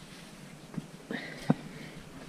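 Faint handling noise as damp fibreglass exhaust wrap is pulled tight and wound around a motorcycle header pipe, with a few soft knocks, the sharpest about one and a half seconds in, and a faint high squeak in the second half.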